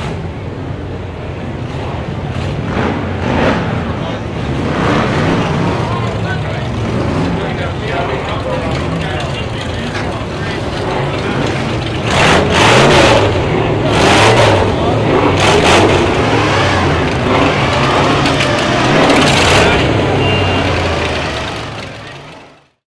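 A hot rod engine running, its pitch wavering up and down, with several louder revs in the second half. Crowd voices run underneath. The sound fades out near the end.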